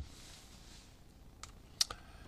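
Quiet room with a faint hiss, then two short clicks near the end, the second louder, from the teacher working the computer.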